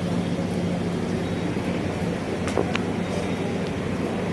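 Steady low rumble and hum of background noise, with a couple of faint sharp clinks about two and a half seconds in.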